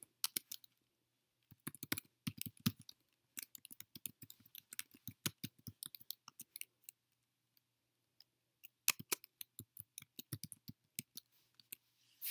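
Computer keyboard typing: quick, irregular keystrokes in runs, with a pause of about a second and a half about two-thirds of the way through before the typing resumes.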